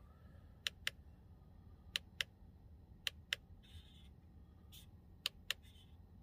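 Control buttons in a 2019 Lamborghini Urus cabin being pressed, making sharp clicks. They come as four quick double clicks about a quarter second apart, plus one single click, roughly a second between presses.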